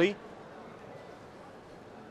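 A man's commentary voice trails off at the very start, then quiet, steady background noise of an indoor sports hall with no distinct knocks or ball bounces.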